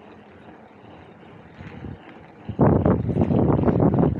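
Riding noise from a mountain bike on a paved path: a low steady rumble, then about two and a half seconds in, a sudden loud, rough buffeting of wind on the camera's microphone.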